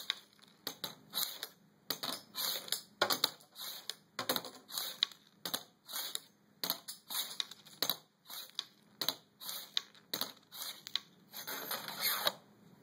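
Metal ruler swung back and forth flat along a tabletop, clacking as it strikes and knocks wooden nickels out from the bottom of a stack one at a time. The strikes come in a quick run, about two or three a second.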